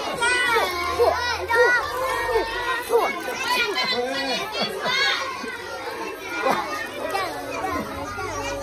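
A group of schoolchildren talking and calling out at once, many high voices overlapping.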